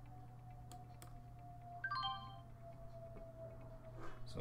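Two faint clicks, then about two seconds in a short electronic alert chime of a few falling notes, from the trading software as a sell order to close a stock position goes through. Under it runs a faint steady hum with a held tone.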